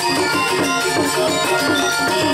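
Balinese gamelan music: metallophones playing a steady stream of fast, ringing notes.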